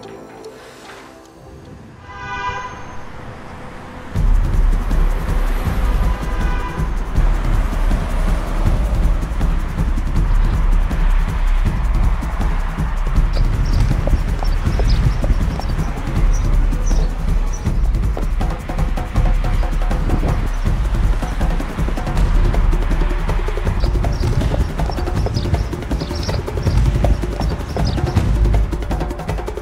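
Background music: a soft opening with a few held notes, then a loud track with a heavy bass beat kicks in about four seconds in and carries on steadily.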